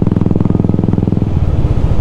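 Royal Enfield Classic 350's single-cylinder engine running under way through an aftermarket exhaust, a steady rapid beat of firing pulses. The note changes about a second and a half in, its higher tones fading.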